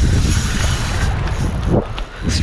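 Wind buffeting the camera's microphone: a loud, steady, rumbling noise.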